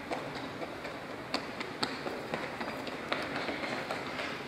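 An audience applauding: a steady patter of clapping with a few sharper, louder claps.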